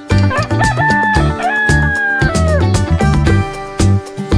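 A rooster crowing, one long crow of about two seconds, over upbeat background music with a steady beat.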